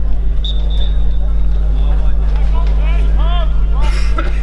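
Open-air pitch ambience dominated by a steady low rumble. Distant shouted calls come from across the field, the clearest about three seconds in, and a short high tone sounds about half a second in.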